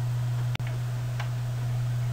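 Steady low electrical hum of the recording, with one sharp click about half a second in and a fainter tick a little over a second in.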